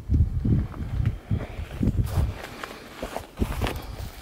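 Footsteps of a person walking over dry, rocky forest ground, several uneven steps, louder in the first half and fainter toward the end.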